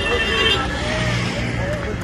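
Several people talking at once beside a vehicle, over a steady low hum of road traffic.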